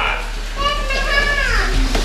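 Children's voices calling out, with one high voice holding a long call that falls in pitch near its end.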